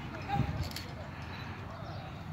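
Background voices of people chatting, with one short sharp click a little over half a second in.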